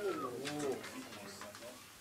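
Quiet murmur of voices in a small room: the tail of a man's announcement at the start, then fainter low-pitched chatter fading down.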